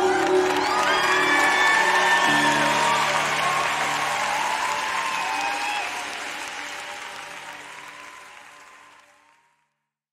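A live worship audience applauding and cheering over held keyboard chords and voices as a song ends. The whole mix fades out steadily and is gone just before the end.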